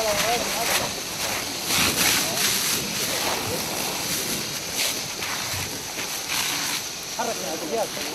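Fire hose nozzle spraying firefighting foam onto burning tyres, a steady rushing hiss, with gusts of wind on the microphone and brief voices near the start and near the end.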